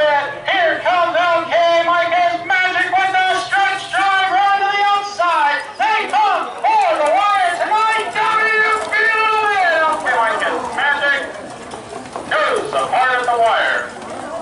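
Loud, excited voice calling out continuously, pitch swinging up and down and dropping somewhat near the end.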